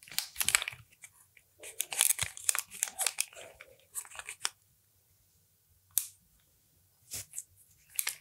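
A comb and a half-inch curling iron being worked through beard hair: irregular crackling rustles and small clicks for about four and a half seconds, then two single clicks near the end.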